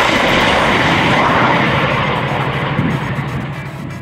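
Anti-tank guided missile fired from a Barrier-S tracked launcher: a loud, steady rocket rush that slowly fades as the missile flies away.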